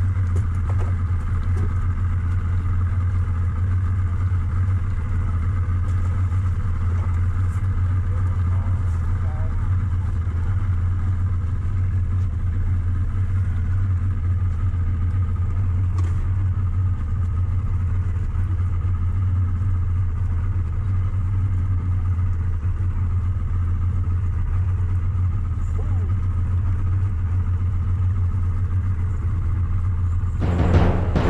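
Boat's outboard motor running at a steady idle: an even, unchanging low hum.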